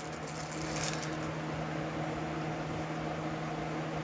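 Steady low mechanical hum of room background noise. A few faint crinkles of plastic wrapping come about half a second to a second in, as a small snow globe is freed from its bag.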